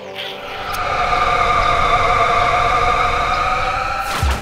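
Cartoon magic-transformation sound effect: a shimmering swell of several held tones over a low rumble. It rises through the first second, holds, and breaks off near the end.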